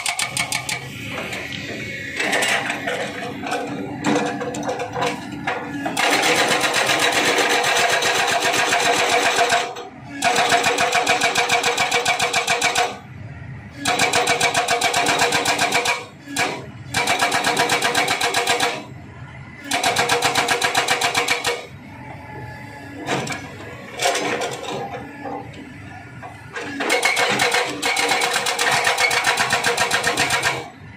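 Hydraulic rock breaker on a Kobelco SK200 excavator hammering rock in rapid, even blows. It comes in runs of a few seconds with short pauses between, and the excavator's engine goes on running during the pauses.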